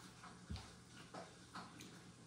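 Faint handling noises: a few light clicks and rustles as sphagnum moss is pressed by hand into a small cup. The clearest click comes about half a second in.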